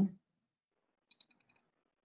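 A woman's voice breaks off, then near silence with a few faint, quick clicks about a second in.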